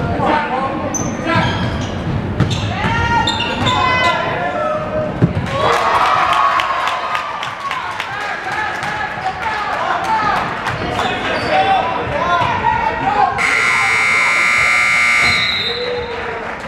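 A basketball being dribbled on a gym floor amid players' and spectators' voices. Near the end a loud gymnasium scoreboard buzzer sounds for about two seconds, then cuts off.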